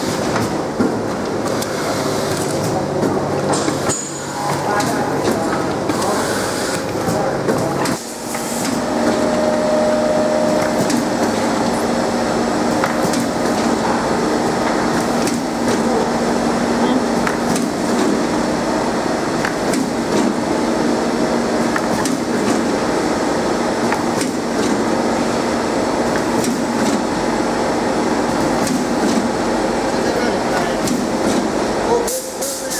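Automatic pulp egg carton labeling machine running: a steady mechanical hum with frequent clicks and clacks from its feeding and labeling mechanisms. The hum's pitch changes about eight seconds in and then holds steady.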